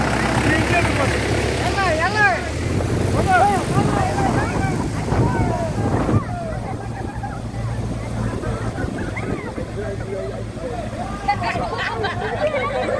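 Tractor's diesel engine running steadily as it drives through floodwater, with several people's voices calling and talking over it. The engine is loudest in the first few seconds and fainter in the second half.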